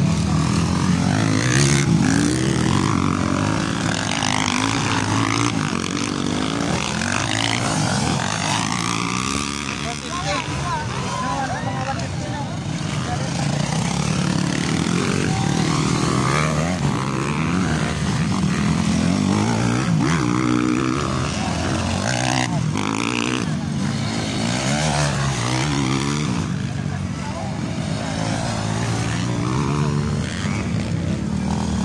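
Several 150 cc-class motocross dirt bikes racing past, their engines revving up and down as they pass and fade, over the chatter of a crowd.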